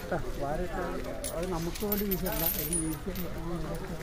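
Metal chains on a captive elephant's legs clinking as it shifts and walks, under people talking.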